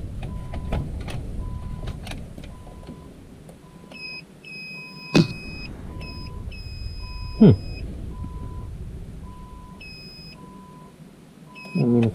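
Tractor cab warning beeper sounding a short, even beep a little more than once a second, set off by the unplugged park lock pressure sensor. A second, higher beep comes on and off in the middle, with two sharp knocks, the louder about seven seconds in, over faint rustling of wires being handled.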